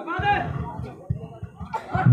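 Indistinct voices of people around the kabaddi court, talking and calling out, with no clear words.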